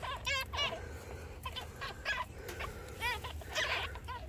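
Newborn Magpie Rex rabbit kits squeaking faintly in the nest: a few short, high-pitched squeaks, two in the first second and two more about three seconds in.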